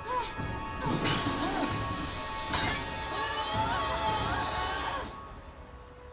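Animated-series soundtrack: dramatic score music with a crash about two and a half seconds in, then two characters screaming.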